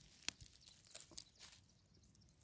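Very faint handling noise: a few soft, sharp clicks, the clearest about a third of a second in and another just after a second, with light rustling between.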